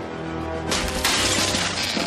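Cartoon sound effect of a wall smashing and crumbling as a figure bursts through it. It starts suddenly less than a second in and plays over background music.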